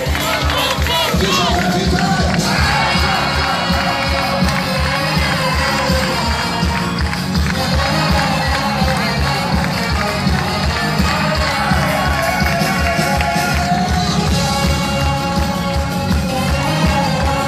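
Live band music with a steady drum beat, played loud over a concert sound system and heard from within the audience, with the crowd cheering and clapping along.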